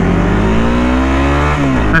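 Honda CRF250L's single-cylinder engine accelerating, its pitch rising steadily, then dropping sharply near the end as the revs fall.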